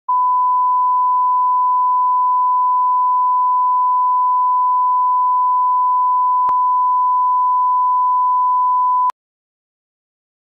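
Steady 1 kHz line-up reference tone from a video leader, one unchanging pitch held for about nine seconds. A brief click interrupts it about six and a half seconds in, and it cuts off suddenly with a click near the end.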